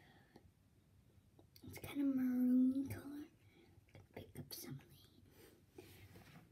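A young girl's voice: one long, steady drawn-out vocal sound of a bit over a second, about two seconds in, with faint whispering and a few small taps afterwards.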